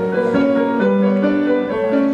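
Live band playing without vocals, led by slow, held piano chords that change every half second or so.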